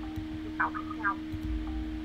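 Two brief, halting syllables of a speaker's voice coming through an online call, over a steady electrical hum and low rumbles on the microphone.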